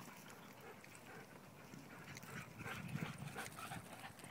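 Faint patter of dogs running on wood-chip mulch against a quiet outdoor background, a little louder about three seconds in.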